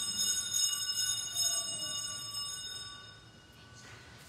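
Altar sanctus bells shaken, a bright ringing that swells a few times and dies away about three seconds in, marking the moment of Communion at the Mass.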